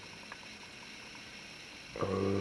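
Quiet, steady background hiss with no distinct sound event: room tone.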